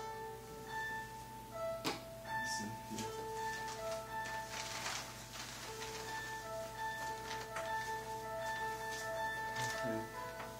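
Soft instrumental background music with slow, held notes, and a single sharp click about two seconds in.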